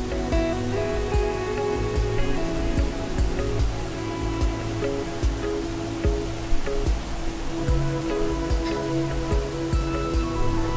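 Soft, calm background music with long held notes over a gentle, steady low beat.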